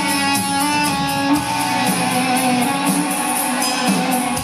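A live rock band playing an instrumental passage: electric guitar over drums, with steady strokes on the cymbals.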